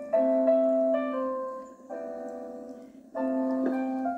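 Slow, gentle piano music: chords struck every second or so and left to ring and fade, a soft instrumental introduction with no voice.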